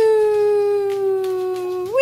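Cockatoo giving a long, clear call that slowly falls in pitch, then swoops up into a second call near the end.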